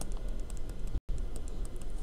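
Stylus tapping and ticking on a tablet screen while handwriting, as light, irregular clicks over a low steady hum. The sound cuts out completely for a split second about halfway through.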